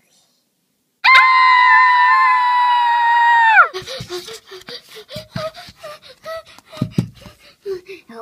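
A loud, high-pitched scream, starting about a second in, held at one pitch for about two and a half seconds and dropping off at the end, as the wolf in a chasing game catches the players. After it come short broken handling sounds and bits of voice.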